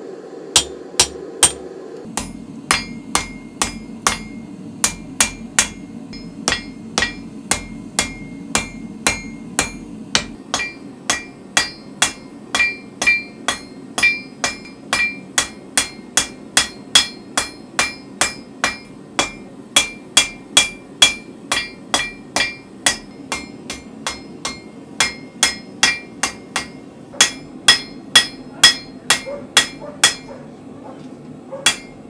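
Hand hammer striking red-hot spring steel on an anvil while forging: a steady run of blows, about two to three a second, each with a short metallic ring.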